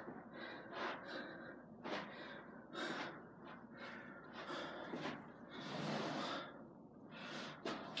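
A man breathing hard, with a noisy breath about every second and one longer exhale about three-quarters of the way through. He is out of breath from a run of bodyweight exercises.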